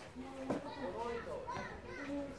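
Children's and onlookers' voices chattering in the background, with one sharp knock about half a second in, the sound of a tennis ball being struck or bouncing.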